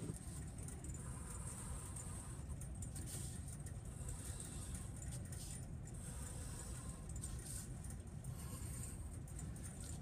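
A pencil faintly scratching lines on paper, a few short strokes, over a steady low room hum.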